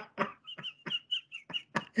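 Laughter: a run of short breathy bursts, about five a second, several with a high squeaky note.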